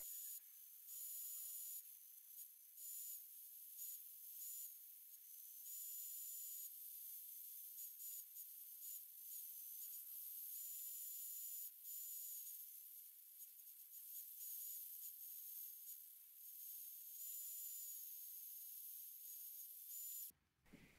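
Faint, high-pitched whine with hiss from a portable band saw running while cutting steel plate. The whine dips slightly in pitch several times and comes back up.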